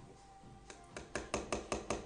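A spoon stirring a sauce in a small glass jar, tapping against the glass in a quick, even rhythm of about six taps a second, starting about a second in.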